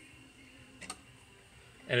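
Low room tone with a single sharp metallic click a little under a second in: a hex key breaking loose the socket-head clamp screw on the foot-lift lever of a Juki LK-1900 bartacking machine.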